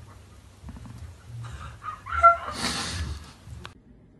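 A cat gives one short cry about two seconds in, followed by a stretch of breathy noise.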